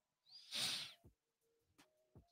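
A man's short breathy exhale into a close microphone, about a second long, followed by a few faint clicks.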